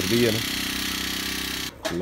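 Backpack power sprayer's small petrol engine running steadily at speed, with a man's voice over it at the start. The engine sound cuts off suddenly near the end.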